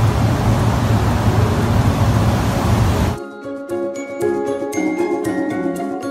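Loud steady hiss and rumble of outdoor background noise, which cuts off abruptly about three seconds in. A light tune of ringing, bell-like mallet notes, like a glockenspiel, follows.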